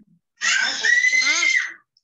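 A child's high-pitched shriek lasting about a second and a half, its pitch dropping away near the end.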